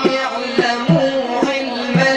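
Devotional Sufi chanting: a large frame drum with jingles beats a steady rhythm, about three strokes a second, under a man's voice singing a held, wavering melody.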